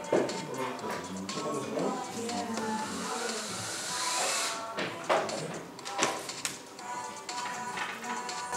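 Circuit-bent electronic gear making glitchy synth noises: bending squeals and clicks, with a burst of hiss carrying a rising whistle about halfway through.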